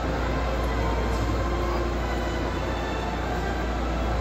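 Disney Resort Line Type X monorail train standing at a station platform, its onboard equipment giving off a steady hum, under the murmur of a crowd.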